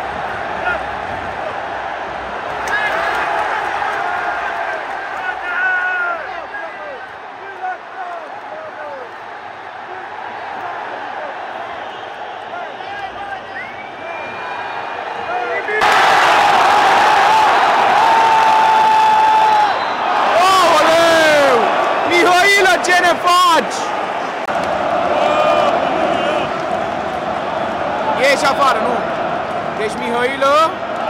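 Football stadium crowd chanting and singing. About halfway through it swells suddenly into a loud din of whistling and jeering, with shrill whistles rising and falling over the noise, before settling back to chanting.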